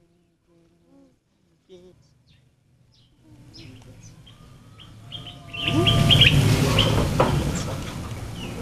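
Birds chirping with many short, high calls over outdoor background noise. The background swells sharply about five and a half seconds in.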